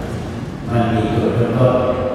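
Buddhist monks chanting Pali verses in a low, steady monotone. The chant dips briefly and resumes less than a second in.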